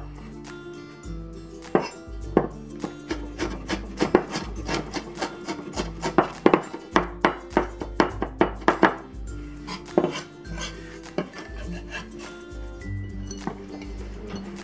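Kitchen knife mincing fresh ginger on a wooden cutting board: a quick run of knife strikes against the wood, thinning out near the end, with soft background music underneath.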